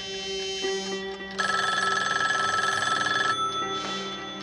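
Telephone bell ringing once for about two seconds, starting a little over a second in and cutting off, over soft background music.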